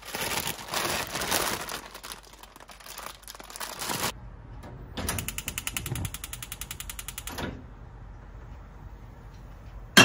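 Old gas range's burner igniter clicking: a noisy stretch of clicks and hiss, then after a short pause a rapid, even run of clicks that stops suddenly once the burner has caught.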